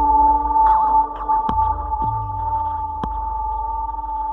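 Electronic dance music played by a DJ: a held, ping-like synth tone over a pulsing low bass, with a few sharp percussive hits cutting through, the second about a second and a half after the first.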